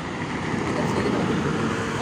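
A bus passing close by at highway speed: a rush of engine and tyre noise that swells about half a second in and stays loud as it goes past.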